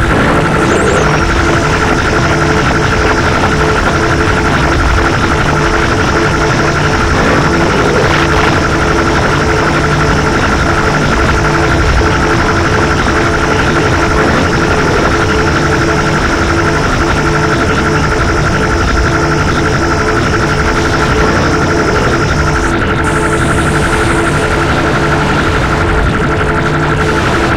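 Noise-music track from a cassette: a loud, unbroken wall of dense noise with several steady droning tones held inside it. A high hiss layer drops out near the end.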